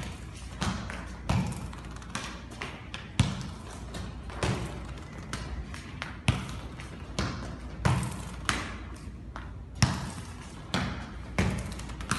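A futsal ball being passed and received on a hard tiled floor: about a dozen sharp kicks and thuds, one every second or so, with quick shoe steps and scuffs between them.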